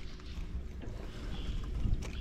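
Steady low rumble of wind and water around a small fishing boat, with a faint steady hum underneath.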